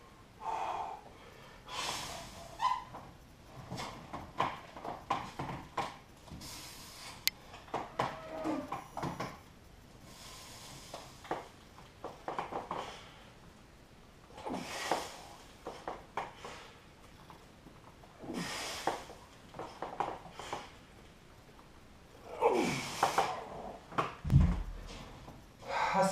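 A man breathing hard with forceful exhalations every few seconds while straining through heavy seated dumbbell overhead presses. A heavy low thump comes near the end as the dumbbells are set down.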